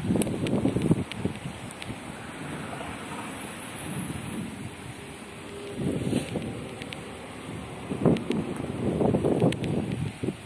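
Wind buffeting the microphone in irregular gusts, over a steady rushing hiss.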